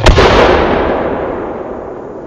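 Lift charge of a homemade 4-inch firework shell firing from its mortar: one sharp, loud bang followed by a long rumble that fades slowly.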